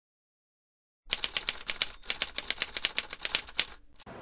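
A fast run of sharp mechanical clicks, about eight to ten a second, starting about a second in, with a short gap near two seconds and stopping just before the end.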